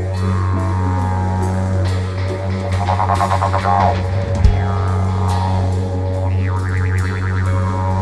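Didgeridoo playing a steady low drone with its overtones sweeping up and down, over a steady drum beat. A single sharp hit stands out about halfway through.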